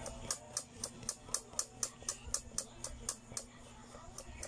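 Tip of a fine paintbrush dabbing on a painted fabric tote bag: light, even taps, about four a second, stopping shortly before the end.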